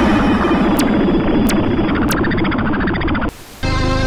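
Electronic synth sting with sweeping pitch glides and a few sharp clicks, broken by a brief burst of noise near the end, after which steady background music begins.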